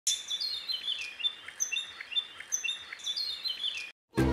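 Songbirds chirping and singing, a quick run of short high chirps and falling whistled phrases repeated over and over; it cuts off suddenly just before the end.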